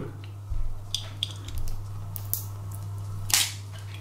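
Scattered light clicks and taps of a pocket-knife tip poking through the label onto the metal cover of a hard drive while hunting for a hidden screw, with a dull thump about half a second in and a sharper click a little after three seconds. A low steady hum runs underneath.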